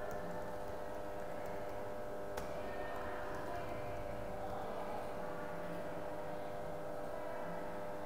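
A steady background hum made of several held tones over low noise, with a single sharp click about two and a half seconds in.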